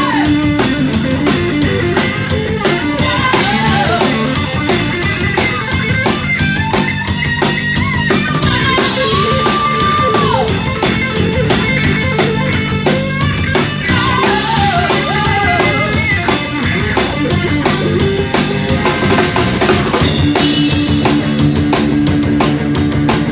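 Live rock band playing loudly: electric guitar, bass guitar and drum kit together over a steady beat, with a lead line that slides up and down in pitch.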